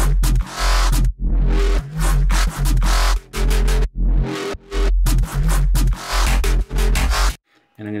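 Electronic bass line playing back through an EQ plugin, very heavy sub-bass under gritty, buzzing notes that come in pulses about once a second. It stops abruptly about seven seconds in. A dynamic EQ cut is working on its harsh mid band.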